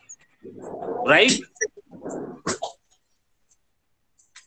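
Speech only: a man's voice over a video call asking "Right?" with a rising pitch, followed by a short stretch of further speech.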